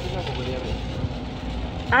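Shopping cart rolling over concrete, its wheels and wire basket giving a steady low rattling rumble.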